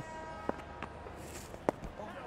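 Quiet cricket ground ambience on the stump microphone as a spin bowler runs in and delivers: a few light clicks and footfalls, then a sharp knock near the end as the ball comes off the leading edge of the bat.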